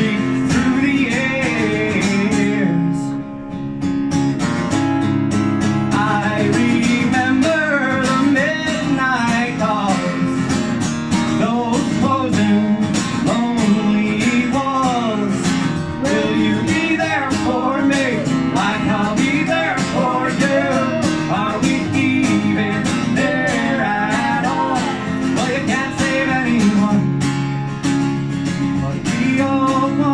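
Live acoustic guitar played with a man and a woman singing a folk-country song.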